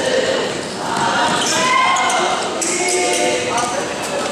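A basketball bounced on a gym's hardwood court during play, the bounces echoing in the large hall, with players' voices calling out.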